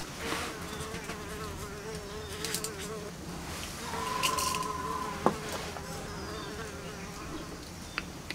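A flying insect buzzing near the microphone, its pitch wavering, with a steadier higher tone joining briefly about four seconds in. A single sharp clink comes about five seconds in.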